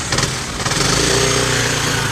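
Kymco Xciting 500 Ri scooter's 500 cc engine driving the scooter away, a loud engine drone that settles to a steady pitch after about half a second as the automatic transmission takes up the drive.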